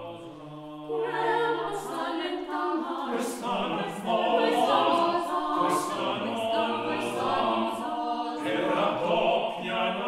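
A small chamber choir singing unaccompanied, with several voice parts moving together. The singing is softer at first, and fuller, louder voices come in about a second in.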